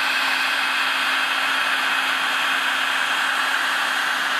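Electric heat gun running steadily, its fan blowing a constant rush of air with a steady high whine. It is being played over scratches in a ceramic polymer paint coating so that the heat makes them heal.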